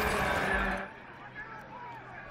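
TV broadcast transition whoosh for a replay-wipe graphic, over stadium crowd background that drops to a quieter level about a second in.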